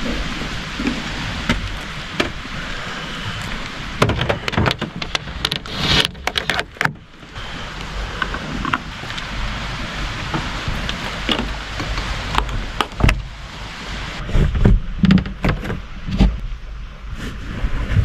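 Steady rain pattering on and around a van, with scattered knocks and clatter throughout.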